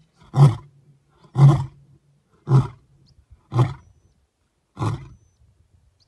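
Male lion grunting five times, about a second apart, with the last grunt the faintest: the short grunts that close a lion's roaring bout.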